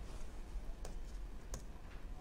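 Two light computer clicks about two-thirds of a second apart, over a faint low hum.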